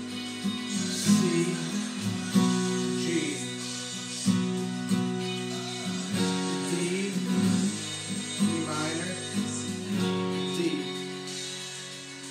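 Steel-string acoustic guitar with a capo on the fourth fret, strummed in chords, each strum a sharp attack every half second or so with the chord ringing on between.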